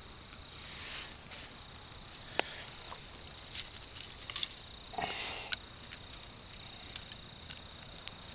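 Crickets chirring in a steady, continuous high-pitched band. Over it come a few sharp snaps and a brief rustle about five seconds in, from the burning tinder bundle and twigs being handled.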